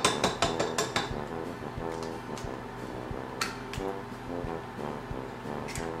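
A few sharp knocks in the first second as an egg is cracked against the rim of a stand mixer's steel bowl, over quiet background music that carries on through the rest.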